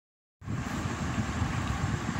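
Steady background rumble and hiss that starts abruptly about half a second in, with an uneven low rumble underneath.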